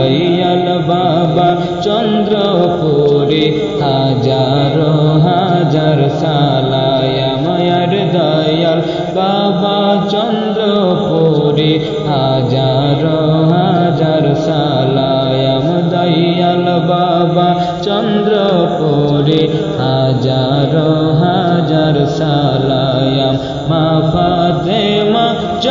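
Music of a Bengali devotional gojol, with chanted singing that goes on without a break.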